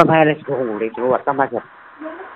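Speech only: a man speaking in short phrases, pausing near the end.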